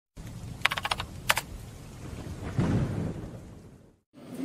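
Intro logo sound effect: two quick bursts of rapid clicks, then a low rumble that swells and fades out.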